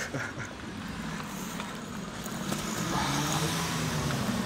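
A motor vehicle's engine running nearby, a steady hum that grows louder in the second half.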